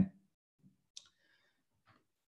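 A single short, sharp click about a second in, otherwise near silence: a computer mouse click advancing the presentation slide.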